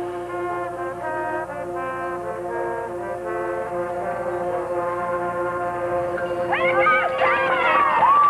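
High school marching band's brass and woodwinds playing slow, sustained chords that settle into one long held chord. Near the end, whistles and cheering from the crowd break out over it.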